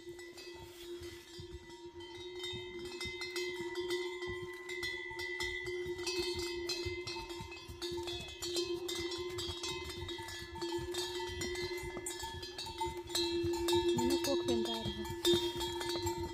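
Bells on a train of pack mules ringing steadily as the animals walk past, with a continuous jangling and clatter that grows louder as they draw near.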